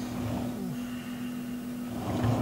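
Steady low electrical hum of room tone, with a few faint soft handling sounds in the first half second.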